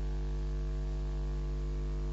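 Steady electrical mains hum: a low buzz with a row of evenly spaced overtones above it, unchanging in level and pitch.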